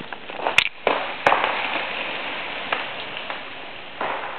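Freezing rain falling steadily on ice-coated trees and ground, with two sharp cracks in the first second and a half, the first the louder.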